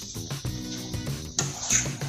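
Background music with a steady beat. A short hiss rises over it about one and a half seconds in.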